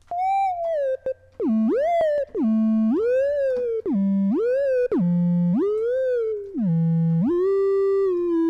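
Sine-wave synth lead from FL Studio's 3x Osc with heavy portamento, playing a short phrase in which each note swoops up and then slides back down between a low and a higher pitch, about five times, ending on a held note near the end. The gliding is too much portamento.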